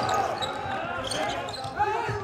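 Court sound of a basketball game in an empty arena, with no crowd: players and coaches calling out, echoing in the hall, and a basketball bouncing on the court.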